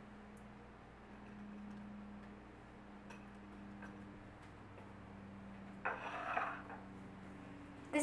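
Quiet kitchen room tone with a low steady hum, a few faint taps, and a brief rustle about six seconds in.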